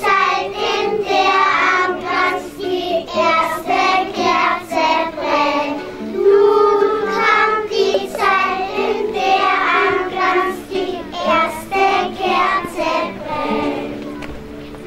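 A group of young children singing a song together, in continuous sung phrases.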